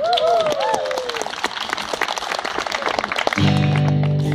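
Audience applauding, with a brief whoop in the first second. Near the end, acoustic guitars start playing a held chord.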